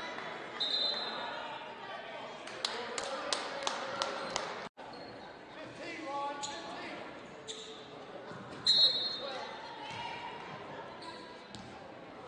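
Basketball being dribbled on a hardwood gym floor, a run of sharp bounces about three a second, then more bounces near the end, over a murmur of crowd voices echoing in the hall. Two short shrill high squeals come about half a second in and near nine seconds; the second is the loudest sound.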